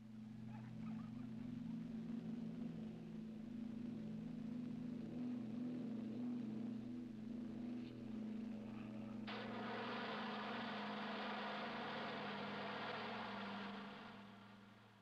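Steady drone of a twin piston-engined ski plane. About nine seconds in, a loud rushing hiss sets in abruptly over the drone and holds until near the end.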